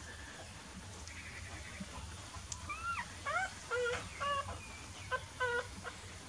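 Newborn puppies squeaking and whining: a run of short, high cries, some rising and falling in pitch, starting about two and a half seconds in and stopping just before the end.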